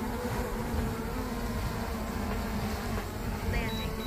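DJI Mavic Air 2 quadcopter's propellers buzzing steadily as it descends to land, a steady hum on a few held pitches.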